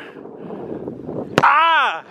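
A thrown ball smacks into a bare hand about a second and a half in, one sharp slap, followed at once by a loud, short yell that rises and then falls in pitch.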